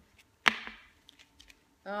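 A single sharp clack about half a second in, a hard clear plastic makeup-brush package being set down, followed by a few faint handling clicks.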